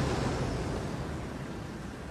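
Cinematic sound effect: a rushing, wind-like noise over a low rumble, slowly fading.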